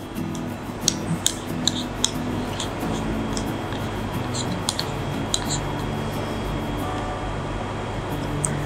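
A metal spoon scraping and clinking against a small ceramic bowl as honey is scooped out, about a dozen light clinks in the first six seconds. Background music with steady held notes plays throughout.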